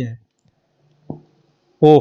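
A single soft keystroke on a computer keyboard about a second in, framed by a man's speech at the start and end.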